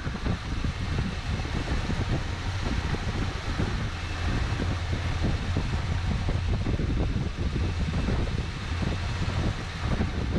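1972 Chevelle wagon's engine running at a steady idle, a continuous low hum with an even pulse.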